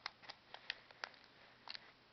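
SNES controller buttons being pressed, several faint, irregularly spaced plastic clicks.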